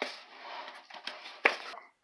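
Wooden spoon stirring a dry flour mixture in a mixing bowl: an uneven scraping rustle, with one sharp knock of the spoon against the bowl about one and a half seconds in.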